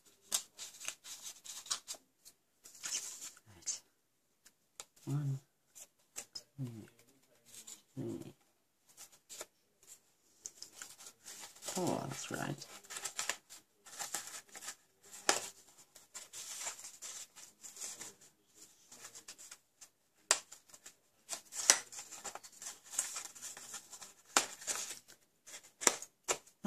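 Card-stock paper rustling and scraping in short, irregular strokes as fingers fold the flaps of a paper box and press the creases flat. A few brief, low vocal sounds come through in the first half.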